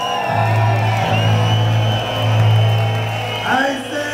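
Live reggae band playing, picked up from within the crowd: a deep bass note held for about three seconds, with whoops and voices gliding over it and a falling swoop near the end.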